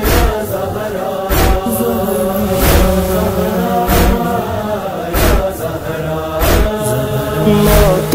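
Wordless male voices chanting a slow, held noha melody, with a heavy matam chest-beat thump about every one and a quarter seconds keeping time.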